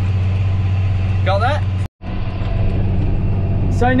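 Steady low drone of a tractor engine heard from inside the cab while it pulls a seeding bar. It cuts out abruptly for an instant just before two seconds in, then carries on unchanged.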